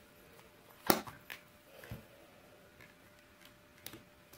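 A tarot deck being handled: cards drawn from the deck and one laid down on the cloth-covered table. There is a sharp card click about a second in, then a few faint ticks and a soft thump.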